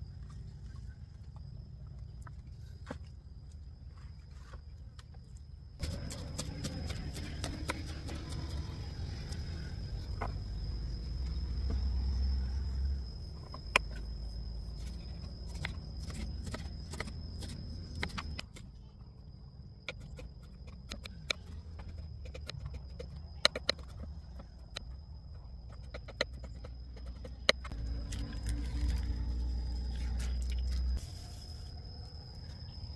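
Kitchen knife chopping spring onions on a wooden cutting board: irregular sharp taps, starting about six seconds in, over a low rumble and a steady faint high whine.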